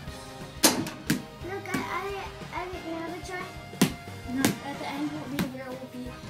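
Background music and children's voices, broken by about five sharp thumps from a game of mini-hoop basketball in a small room.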